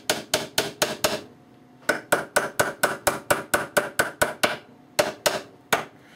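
Small hammer tapping little nails into the edge of a glued wooden box panel: quick light taps about four a second, a short pause a second in, then a longer run of taps and a few slower ones near the end.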